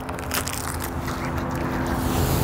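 A distant motor humming steadily at a low pitch, with a few faint clicks in the first half second.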